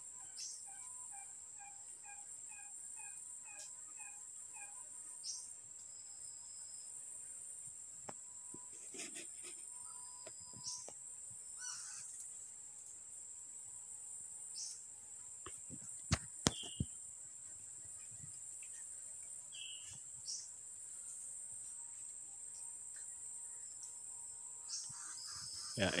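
Forest ambience: a steady high insect drone, with a bird calling a run of evenly repeated notes, about three a second, for the first five seconds, then scattered short chirps. Two sharp clicks come about sixteen seconds in.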